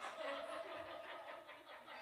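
Faint chuckling and murmured voices from a small congregation.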